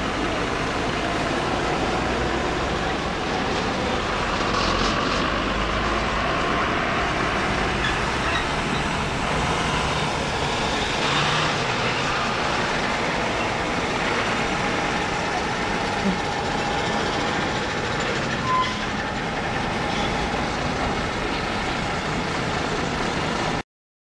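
Heavy cargo trucks driving past, a steady din of engines and tyre noise with a brief short tone about eighteen seconds in; the sound cuts off suddenly just before the end.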